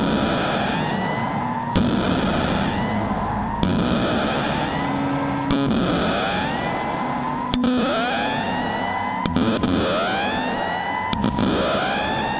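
Electronic music made with software synthesizers in Reason: a dense, noisy synth texture. A rising pitch sweep repeats about every two seconds, each one starting with a sharp hit.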